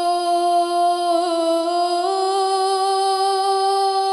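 Young women singing sholawat in unison, unaccompanied: one long held note that wavers briefly just past a second in and steps up a little about two seconds in.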